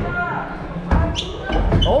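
Trainer soles striking a plywood parkour wall as someone runs up and climbs it: one sharp knock about a second in, then duller thumps near the end.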